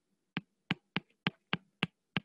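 A stylus tip tapping on a tablet's glass screen during handwriting: six short, sharp clicks, about three a second.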